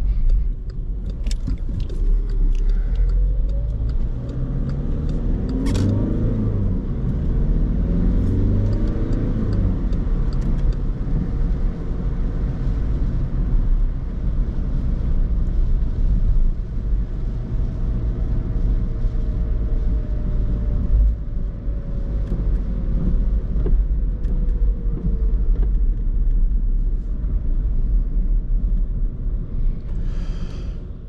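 In-cabin sound of a Skoda Fabia II's 1.6 TDI common-rail four-cylinder diesel driving through town, with steady low road and tyre rumble. The engine note rises as the car pulls away a few seconds in, and there is a single sharp click around six seconds in.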